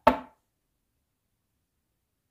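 A single sharp knock on a hard surface right at the start, ringing out briefly, made as a pattern for a spirit to copy.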